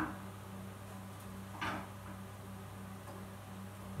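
A steady low hum with one short rustle of handling about a second and a half in, as the clear plastic siphon tube is moved by hand.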